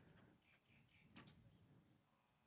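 Near silence: faint outdoor background with one faint click about a second in.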